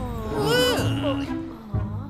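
A short wordless vocal cry from a cartoon character, rising then falling in pitch, over light background music.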